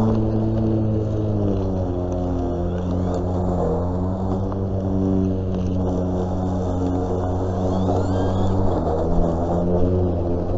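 Cordless EGO battery lawn mower running while being pushed: a steady motor-and-blade hum whose pitch dips slightly about a second and a half in and again near the end.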